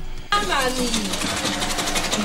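A small machine running with a fast, steady rattle that starts suddenly about a third of a second in, with a voice faintly heard under it.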